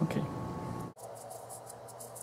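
A short spoken word, then an abrupt cut about a second in to a quieter room with faint, quick scratchy strokes of a paintbrush on the paper of a paint-with-water book.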